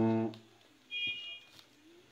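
A man's voice through a microphone holding a drawn-out syllable that ends about half a second in, followed by a pause with a brief faint high tone about a second in.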